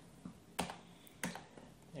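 Computer keyboard being typed on: a few separate keystrokes, spaced roughly half a second apart, over a quiet background.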